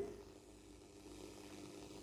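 Near silence with a faint steady hum: a pause between items of an FM radio news broadcast.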